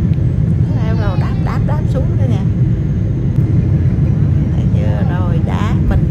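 Airliner cabin noise during landing, heard from a window seat: a steady low rumble of the engines and rushing air.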